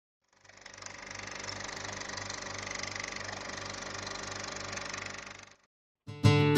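A steady mechanical running noise, like a small motor, with a low pulse about three times a second. It fades in and fades out again shortly before the end.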